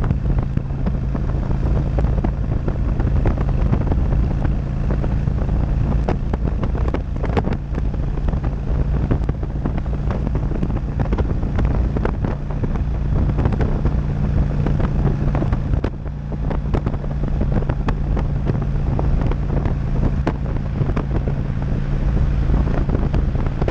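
Motorcycle engine running at a steady cruise on the highway, a constant low drone, buried under loud, gusting wind buffeting on the microphone.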